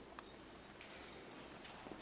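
Faint footsteps and light knocks at irregular spacing, a few short clicks over quiet room tone.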